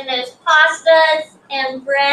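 A high, child-like voice singing a string of short held notes with brief breaks between them.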